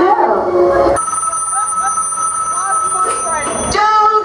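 A telephone ringing in a playback soundtrack: a steady ring that starts about a second in and cuts off shortly before the end, after a brief bit of voice.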